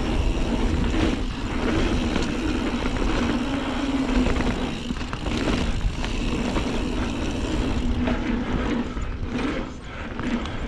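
Mountain bike rolling fast down a packed-dirt trail: wind buffeting the microphone over tyre noise, with a steady low hum.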